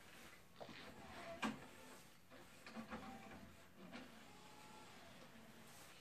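Faint mechanical sounds of a LaserDisc player's motorized disc tray sliding open while the disc is handled, with a light click about one and a half seconds in.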